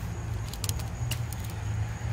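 Steady low mechanical hum under outdoor background noise, with a few light clicks around the middle.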